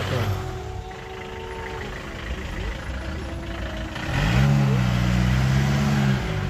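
Car engine and traffic noise heard from inside the car's cabin in slow, congested traffic. A loud, low, steady droning tone starts about four seconds in and holds for about two seconds.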